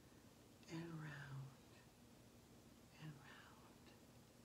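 A woman's voice speaking softly in two short phrases, one about a second in and a briefer one about three seconds in, with near silence between.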